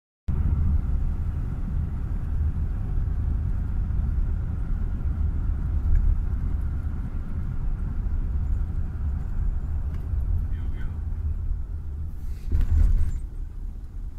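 Car driving, heard from inside the cabin: a steady low rumble of engine and road noise, with a louder surge of noise near the end.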